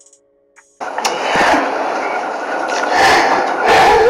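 Faint tones, then about a second in the rough audio of an inserted press-room news clip cuts in loudly: a dense hiss with a few louder surges.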